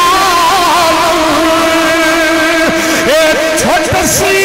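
A man's voice singing a long, drawn-out melodic line through a microphone and loudspeakers, holding notes with a wavering, ornamented pitch and sliding between notes near the end.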